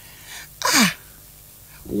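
A single short, breathy vocal burst from a person, with a falling pitch, in a pause between speech.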